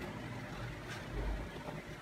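Quiet room tone with a faint low rumble, in a pause between words.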